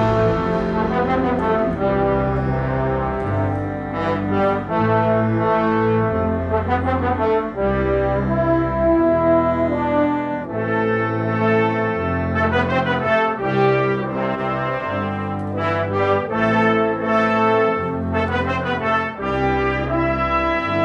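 Military concert band playing: sustained brass and woodwind chords over a low bass line that moves to a new note about every second.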